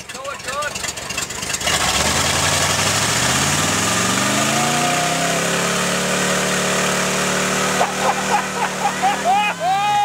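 MG off-roader's engine revving up over about three seconds and held at high revs as it spins its mud tyres through deep mud, then dropping off near the end.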